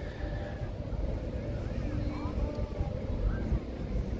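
Outdoor seaside promenade ambience: a steady low wind noise on the microphone, with faint voices of people in the distance.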